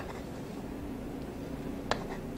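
Egg-coated meat and tofu patties frying in oil in a frying pan over low heat, a faint steady sizzle. There is a sharp click of the spatula against the pan near the end.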